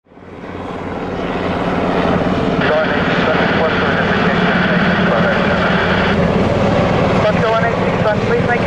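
NH90 NFH twin-turbine helicopter hovering, its main rotor giving a steady, fast blade beat over the turbine noise. The sound fades in during the first second or two, and a voice over a radio begins near the end.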